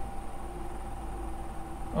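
Steady background room tone: a low hum with a faint hiss and a faint high, steady tone, with no distinct events.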